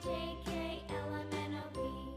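Quiet background children's music: a simple melody of short notes changing every fraction of a second.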